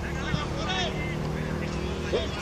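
Faint, distant voices calling out across a football pitch, over a steady low hum.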